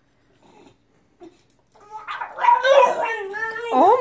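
A bulldog vocalizing in a drawn-out, wavering whine that starts about halfway in, right after the recorder playing stops.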